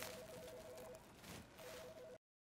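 Near silence: faint room tone with a faint two-note electronic beeping that pulses on and off, pausing briefly past the middle.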